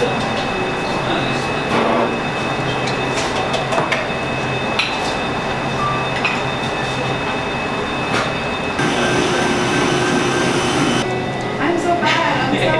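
Busy coffee-shop background: a steady machine hum and murmur of indistinct voices, with scattered clinks. From about nine to eleven seconds a different steady whir runs, then stops.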